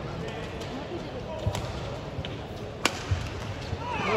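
Badminton arena ambience between rallies: a steady crowd murmur with faint voices, broken by a few sharp taps, two of them clear at about a second and a half and near three seconds in, and some low thuds.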